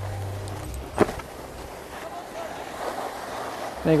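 Skis sliding and scraping over groomed snow, a steady hiss, with a single sharp knock about a second in.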